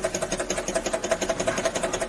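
Crown WL-CX60 pneumatic network-cable twisting machine running a twisting cycle: its air-cylinder-driven press block shuttles rapidly back and forth over the stripped wire ends, making an even, fast mechanical chatter of about a dozen beats a second.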